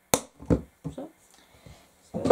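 Handling sounds of small objects: a sharp click just after the start, then a few softer knocks within the first second.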